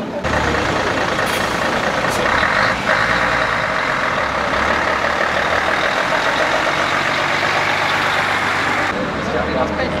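Heavy trucks, a Mercedes-Benz Actros among them, driving past close by with their diesel engines running. The noise is loud and steady, easing off near the end.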